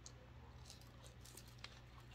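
Near silence: faint mouth sounds of biting into and chewing a fried taco, with one small click about one and a half seconds in.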